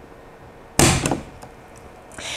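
A single sharp click, about a second in, as the PoE extender's metal DIN-rail clip snaps free of the metal DIN rail.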